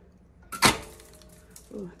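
Goodspeed multi-wire soap cutter's wires pulled down through a salt-topped loaf of cold process soap, ending in one sharp clack with a brief metallic ring just over half a second in, as the salt topping scatters.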